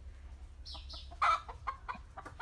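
Chickens clucking: a couple of short calls about a second in, then a quick run of short clucks near the end.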